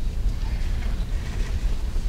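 Steady low rumble of room noise in a hall, with a faint murmur of distant voices over it.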